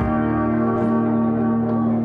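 Live band music amplified through a Bose L1 PA, with no singing. Keyboard and guitars strike a chord at the start and let it ring, with a few light plucks over the held notes.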